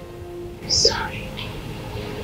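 Background music of sustained notes, with a woman's brief breathy sob a little under a second in.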